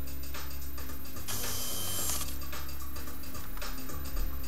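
Finger-drive motors and gears of a 3D-printed bionic hand whirring for about a second in the middle as the four fingers straighten out of a curled gesture, over a steady low hum.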